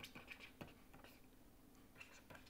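Faint scratching and tapping of a stylus writing on a tablet, a string of short pen strokes.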